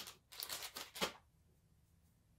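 Brief rustling and light handling noises from hands moving makeup items and a plastic storage basket on a soft surface, ending in a small click about a second in.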